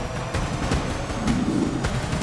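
Television show theme music with a steady, heavy drum beat, about three hits a second.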